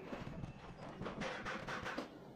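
Workshop clatter: a run of irregular knocks and taps of metal work on a car's rear suspension, some only a few tenths of a second apart.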